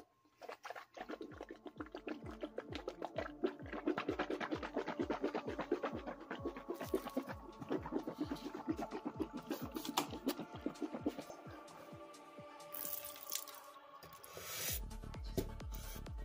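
A person gargling salt water in the back of the throat over background music with a steady beat, then spitting it out with a brief splash near the end.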